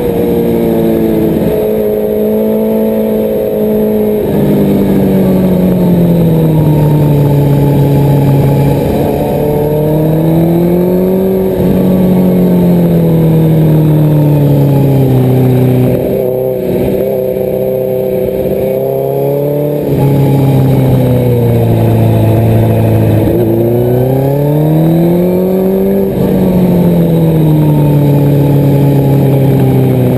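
Suzuki GSX-R1000's inline-four engine at speed, its note falling and rising several times as the throttle is rolled off and back on through a run of bends, with a few sudden steps in pitch.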